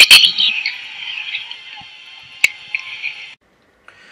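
Soundtrack of an old film clip: a brief loud sound at the start, then a fading high-pitched hiss with faint steady tones and one sharp click, cut off abruptly a little over three seconds in.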